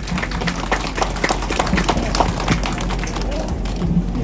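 Applause: many people clapping their hands in a dense, irregular patter.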